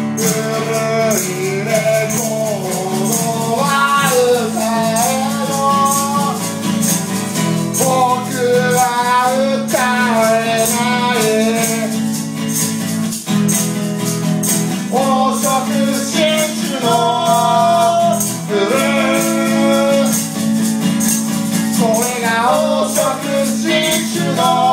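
Live acoustic song: a man singing over a strummed acoustic guitar, with maracas shaken in a steady rhythm.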